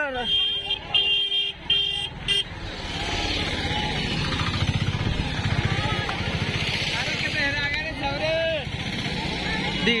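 A vehicle horn gives four short beeps, then a motor vehicle's engine runs steadily close by, with a fast even pulse.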